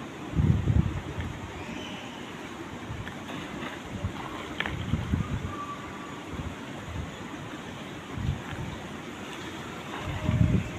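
Wind buffeting the microphone of a handheld phone, rumbling in several gusts, the strongest just after the start, with lighter ones in the middle and near the end, over a steady hiss.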